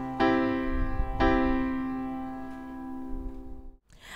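A C major chord on a piano (low C in the left hand, C-E-G in the right), struck twice about a second apart near the start and left to ring and fade. It stops abruptly just before the end.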